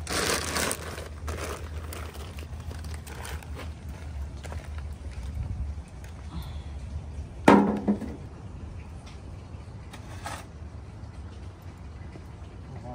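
Potting soil poured from a plastic bag into a pot, a crumbly rustle that fades after about a second, followed by scattered handling noise over a steady low rumble. A brief loud sound stands out about halfway through.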